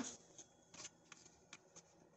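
Near silence with several faint clicks and light rubbing as a hand handles a small clear lamp with a frosted coffee-cup design.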